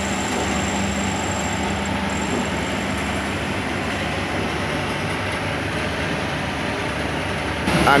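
Steady din of engines and traffic around a roadworks site, with a low engine hum that fades out about three and a half seconds in.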